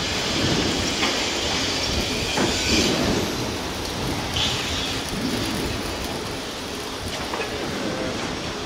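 Wind buffeting the microphone, a steady rumble and hiss with a few brief gusts.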